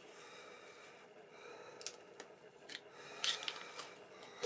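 Aluminium foil tape being peeled and pressed onto a wooden disc: faint crinkling with a few sharp crackles, the loudest cluster about three seconds in.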